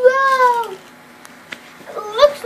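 A drawn-out, high-pitched wailing call that arches up and then falls away, ending about three-quarters of a second in, followed near the end by a second, shorter call that rises in pitch.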